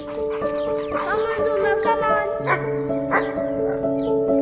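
Soft piano music with held, overlapping notes, and a dog barking a few short times over it, first about a second in.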